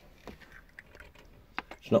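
Faint scattered clicks and taps of a small pot of yellow paint and its screw lid being handled and put down on a paint palette, with a couple of sharper clicks near the end.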